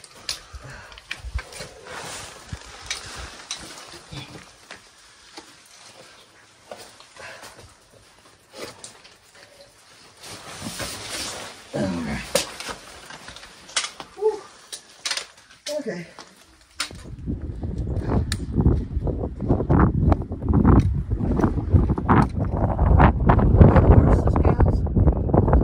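Scattered knocks, scrapes and rustles of hikers with trekking poles and backpacks scrambling up a rock cleft, with a few brief bits of voice. About two-thirds of the way through, this suddenly gives way to strong wind buffeting the microphone.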